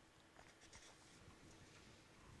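Near silence: faint room tone with a few soft scratches of a pen on paper.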